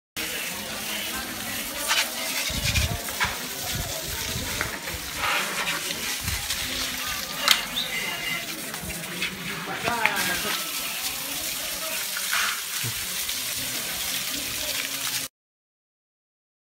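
Water from a hose spraying onto a muddy mountain bike as it is washed, a steady splashing rush with occasional knocks. Indistinct voices talk over it.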